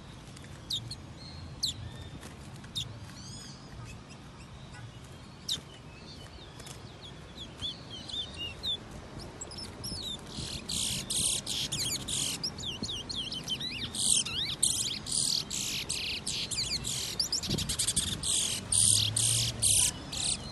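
Caged black songbirds calling. For the first half there are scattered short chirps and whistles; from about halfway a loud, fast, continuous warbling song runs in phrases with brief gaps until the end.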